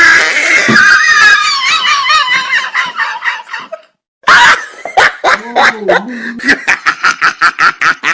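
Loud laughter in repeated bursts, breaking off abruptly about four seconds in and then resuming as a quick run of short, rhythmic laughs.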